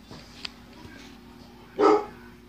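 A dog barks once, a short single bark near the end.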